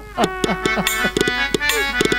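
Live jatra accompaniment music: a reedy melody instrument playing short falling slides over hand-drum strokes.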